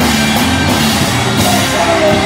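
A rock band playing live and loud: electric guitars and a drum kit with cymbals.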